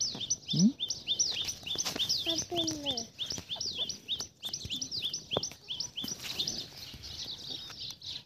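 Rapid, evenly repeated high chirping, about four chirps a second, like a bird calling over and over. A short falling cry comes in about two and a half seconds in.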